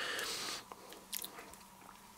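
Faint handling noises: a soft rustle, then two or three small crunches, as a piece of modelling clay is picked up and handled by hand.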